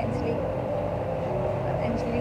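Indistinct voices over a steady low hum, the kind an evaporative room air cooler's fan makes when running.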